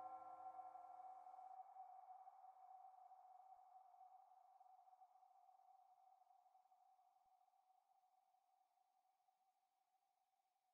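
Faint dying tail of the beat's final synth note: a few held tones, most of which drop out within the first two seconds, leaving one steady tone that fades slowly away and is all but gone by the end.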